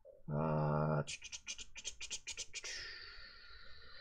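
A short hummed "mm", then a quick run of about ten scratchy strokes, about six a second, close to a microphone.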